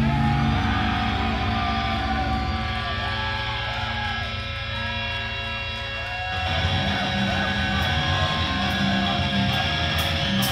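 Live heavy metal band playing: distorted electric guitars holding ringing notes, some bent up and down in pitch, with a heavier low end of bass coming in about six seconds in.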